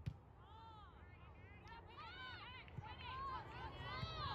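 Distant shouts and calls from a soccer game, many short cries rising and falling in pitch, growing a little louder toward the end. A sharp knock comes just at the start.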